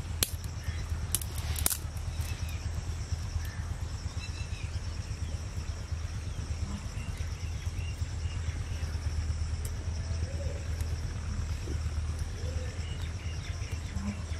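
Outdoor ambience: a steady low rumble under a steady high-pitched insect hum, with a few sharp clicks in the first two seconds and faint bird calls here and there.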